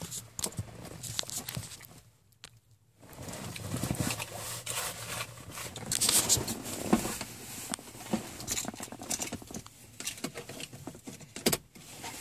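Irregular clicks, rubs and rustles from a handheld camera being moved about a car's interior, with a near-silent pause about two seconds in.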